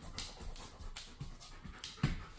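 Sheepadoodle panting softly, a quick run of faint, even breaths, a few each second.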